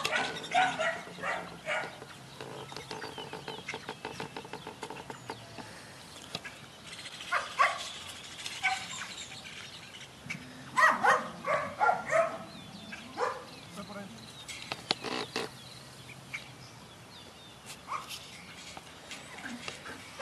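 Young Belgian Malinois barking in short, scattered bursts, with a cluster of barks about halfway through, mixed with a few brief spoken words.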